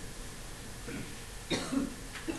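A single short cough about one and a half seconds in, over faint room noise.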